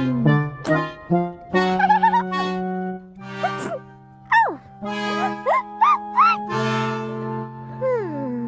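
Cartoon score music with held chords, with short squeaky pitch glides that rise and fall, most of them in the second half: a cartoon character's small vocal sounds.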